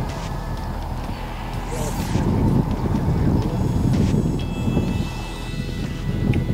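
Wind buffeting the microphone on an open field, with one short whoosh about two seconds in as a long surfcasting rod is swung through a distance cast.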